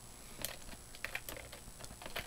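Typing on a computer keyboard: faint, irregular key clicks as a file name is typed.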